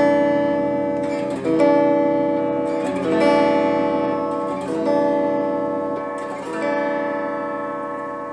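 Donner DST-152R Strat-style electric guitar played clean through an amp: a chord struck about every one and a half to two seconds and left to ring, as each pickup position is tried in turn. The strings are still out of tune from the box.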